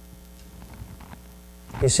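Steady low electrical mains hum from the sound system. A man's voice begins near the end.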